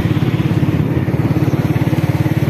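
Small motorcycle engine running at a steady cruising speed, with a rapid, even pulse.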